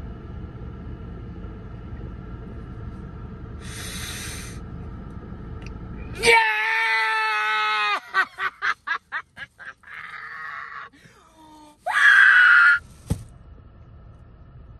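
Low steady rumble inside a car cabin. About six seconds in it cuts off abruptly for a loud, held, high-pitched scream, which breaks into a quick run of short cries. A final loud shout-like burst comes near the end.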